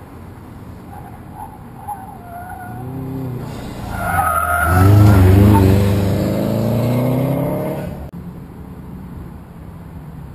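Autocross car running the cone course: tires squealing through the turns, then the engine pulling hard, its pitch rising as it accelerates. It is loudest about five seconds in and drops away suddenly about eight seconds in.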